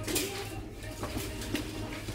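Supermarket background noise: faint piped music with a steady low hum and a few short clicks or clinks.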